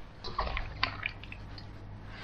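Wet, salted radish cubes scooped by hand out of their brine and dropped into a ceramic bowl: a few faint, wet clicks and drips, mostly in the first second.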